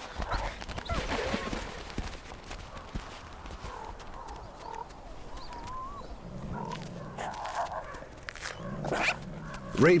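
Ravens calling at a wolf kill, with faint wavering calls through the middle, and a gray wolf growling low twice in the second half.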